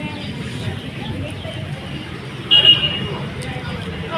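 Street traffic noise with voices around, and a short, high-pitched vehicle horn toot about two and a half seconds in.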